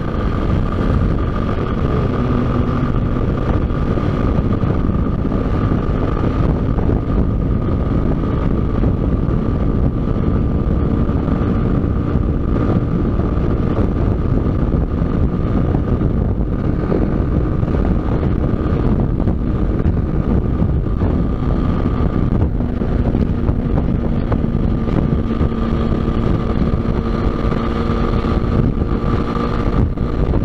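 Motorcycle engine running steadily at highway cruising speed, with wind rushing over the microphone.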